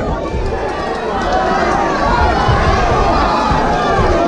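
Crowd of spectators shouting and yelling during a boxing bout, many voices at once, growing a little louder about a second in.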